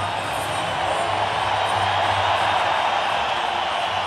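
Music over the steady noise of a hockey arena crowd, which swells slightly midway.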